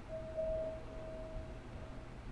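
A single electronic chime note from the station platform speakers, held for about a second and a half, then fading.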